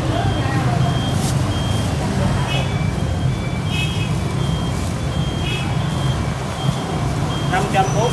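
Electronic calculator key beeps: a string of short, high beeps as a sale price is tapped in, over a steady low background rumble.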